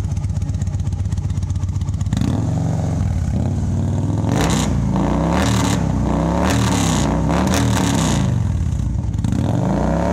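A 2016 Victory Vision's V-twin running through freshly fitted Arlen Ness Big Honkers exhaust tips. It idles for about two seconds, then is revved and held higher, followed by a run of about five quick throttle blips that rise and fall in pitch.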